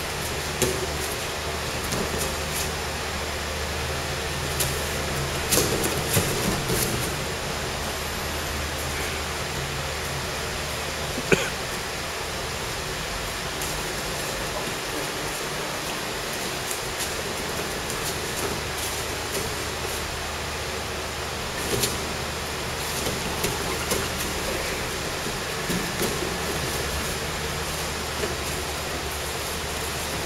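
Steady room noise with scattered scuffs and crinkles of bare feet shifting on plastic sheeting over a mat as two people grapple, and one sharp knock about eleven seconds in.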